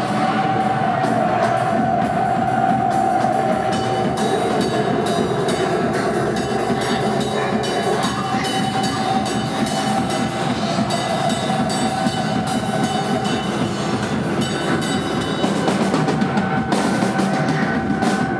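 Live rock band playing loud, dense music, the drum kit busy with many cymbal and drum strokes over a long held note.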